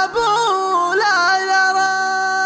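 Shaylah, a Gulf Arabic chanted song: a male voice runs through a quick ornamented phrase with stepped pitch turns, then holds one long steady note from about halfway through.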